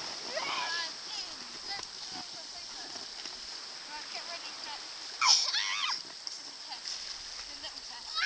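Children's voices calling out, with one loud high shout about five seconds in, over the splashing and lapping of shallow sea water around children wading.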